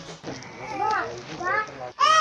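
A young child's voice: two short high-pitched calls in the second half.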